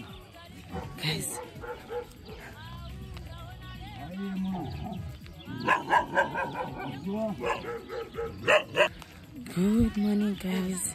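A dog barking, with clusters of short barks in the second half, over faint voices and music.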